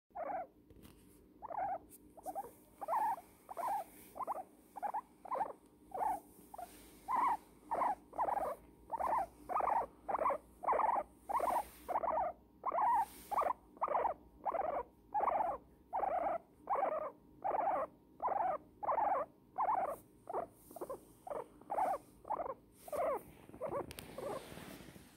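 Guinea pig squeaking in a steady rhythm of short calls, about two a second, while being cuddled in a blanket. The owner takes this for contentment.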